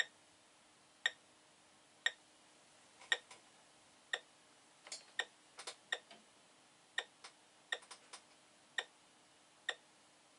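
Short, sharp clicks with a slight ring, about one a second, with extra irregular clicks in between through the middle, from the Science Fair Microcomputer Trainer and its interface as code is sent to it from the TI-99/4A.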